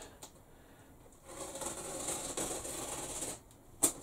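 Rustling of packaging for about two seconds as hands work at a heavily taped, plastic-wrapped cardboard box to open it, followed by a single sharp click near the end.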